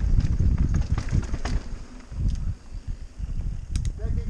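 Mountain bike riding fast down a dirt singletrack, heard from a helmet-mounted camera: a loud, uneven rumble with irregular knocks and rattles as the bike goes over bumps.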